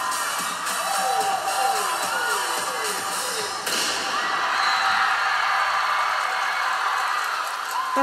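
Live Mandopop concert recording: music with a repeating falling tone over the first few seconds. About four seconds in it changes suddenly to a dense wash of noise that lasts a few seconds, where the stage effects go off and the crowd is shown.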